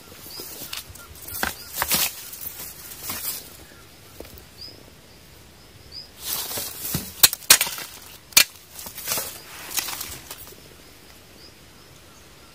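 Rustling and scattered sharp clicks and knocks from a hand-held camera and microphone being moved through wet grass and undergrowth, busiest in the second half, with a few faint short high chirps behind.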